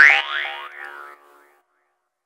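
Closing sound of an electronic house track: a rising synth "boing" glide, then a smaller second one, over a held synth chord that fades out about a second and a half in.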